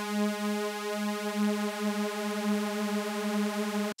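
Arturia MiniFreak V software synthesizer holding one note on a detuned SuperWave saw oscillator, with a slow wobble from the detuned voices beating against each other. The note cuts off sharply near the end.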